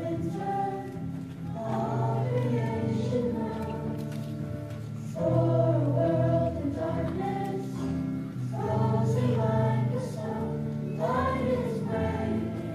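A children's choir singing in phrases, swelling louder a little before the middle and again in the second half.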